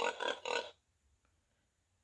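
Recorded pig grunts, a few quick short oinks, played from a children's sound book's electronic sound module; they stop under a second in.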